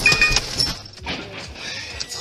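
The end of a car collision heard from inside the car: a crash with metallic clinking and brief ringing that dies away over the first half second, followed by quieter rattling as loose items on the dashboard settle.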